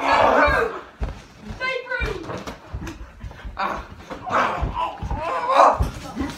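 Raised voices shouting and exclaiming during a scuffle, with scattered thuds of bodies and feet on the floor.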